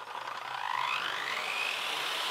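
Sliding compound mitre saw's electric motor spinning up: a whine that rises in pitch for about a second and then holds steady at a high pitch.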